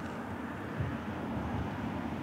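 Steady low background rumble of outdoor ambience, with no distinct events.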